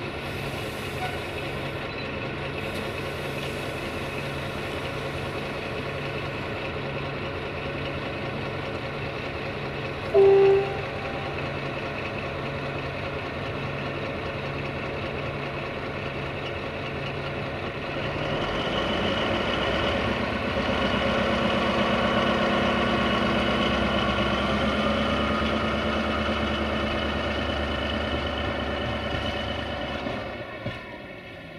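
Diesel-hydraulic shunting locomotive LDH 82-0615-8 idling with a steady engine drone, then throttling up about two-thirds of the way through and running louder as it pulls away. A short horn toot sounds about a third of the way through and is the loudest sound.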